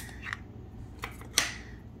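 Small plastic capsule pod and wrapper being handled while a miniature toy jar is unwrapped: a few light clicks, then one sharp plastic click about one and a half seconds in.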